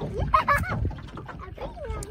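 A young child's high-pitched vocal noises that glide up and down in pitch, in short squeals rather than words, over a low rumble.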